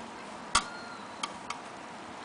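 Light clinks on a porcelain coffee cup: three sharp knocks. The first and loudest comes about half a second in and rings briefly. The other two come close together about a second later.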